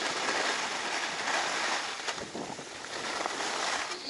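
Skis sliding and scraping over groomed, hard-packed snow during a descent: a steady hiss that eases a little around two and a half seconds in.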